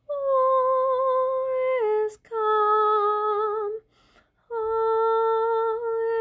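One high voice singing a Christmas hymn unaccompanied, holding long steady notes that step down slightly at the ends of phrases. There are three phrases, with a brief break about two seconds in and a longer pause around the middle.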